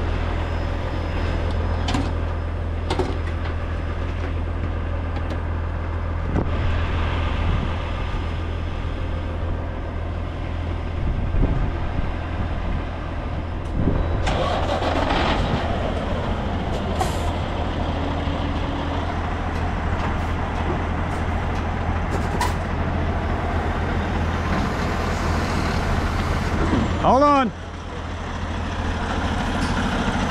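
Diesel semi tractor running with a steady low drone as it slowly pulls a loaded lowboy trailer, with scattered clicks and knocks. Near the end comes a short sound that sweeps in pitch, typical of an air brake, before the level dips briefly.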